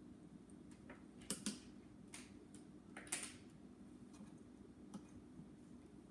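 Faint, short scrapes and taps of a thin wooden stick working wood glue under a lifted edge of veneer on a wooden cabinet lid, a handful of them, the loudest about one and three seconds in, over a low steady hum.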